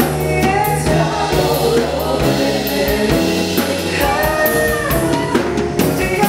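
A live band playing with a man singing lead and backing singers joining in, over electric keyboard, bass guitar and drum kit.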